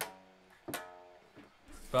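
Fender Stratocaster electric guitar: two single notes are picked, one at the start and another about 0.7 s in, each ringing and then fading.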